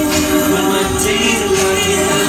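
Live music through stage speakers: a backing track with held chords and light percussion hits about once a second, with some singing over it.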